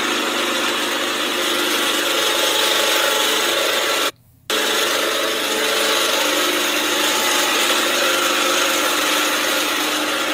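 Cloth rubbing against a phone's microphone as the phone is pressed against and moved over a jumpsuit, a steady scratchy noise. It cuts out to silence for about half a second around four seconds in, then carries on the same.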